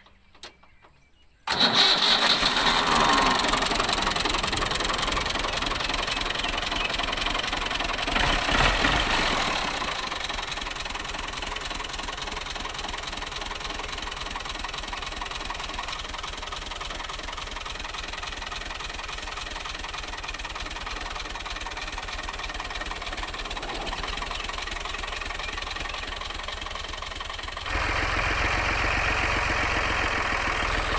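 Al Ghazi 480 tractor's diesel engine starting about a second and a half in, catching at once and running fast, with a brief rise in revs around nine seconds before it settles to a steady idle. Near the end the engine sound steps up suddenly.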